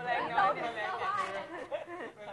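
Speech only: several people talking over one another, with one voice repeating 'little insect' in Thai.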